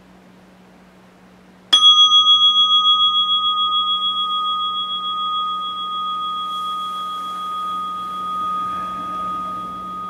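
A meditation bell struck once, ringing with a clear, long sustain that slowly fades with a wavering beat. It marks the end of the meditation period.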